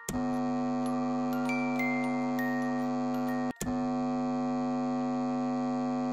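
A steady electronic drone, a sustained chord of many held tones, with a few higher notes stepping over it in the first half. It drops out briefly twice, near the start and a little past halfway.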